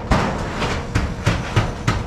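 Corrugated long-span steel roof sheets rattling and banging overhead as a sheet is slid into place and fitted onto the steel purlins: a loud, irregular run of metal knocks, several a second, with rattle between them.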